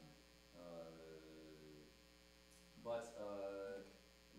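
Steady electrical mains hum from the sound system, with a man's drawn-out hesitant 'uhh' about half a second in and a short burst of voice near the end.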